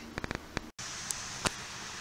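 A few quick clicks, then a brief silence. After that comes a steady, even whooshing of the hoop house's ventilation fan running, with two faint clicks.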